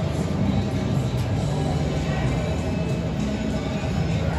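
Music from an electronic roulette terminal playing steadily during a spin, over casino floor din.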